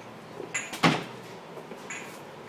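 A door being handled: a latch-like click, then a single loud bang just under a second in, and a fainter click near the end.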